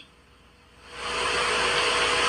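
Near silence for under a second, then a steady hiss swells in and holds, with a faint low hum under it.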